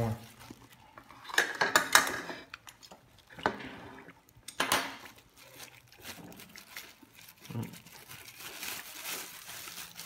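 Thin plastic bag crinkling and rustling in irregular bursts as it is untied and opened by hand, with a few light clinks of dishes or cutlery on the table.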